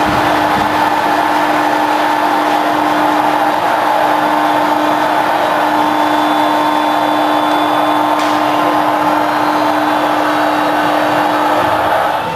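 Arena horn sounding one long, steady tone that cuts off near the end.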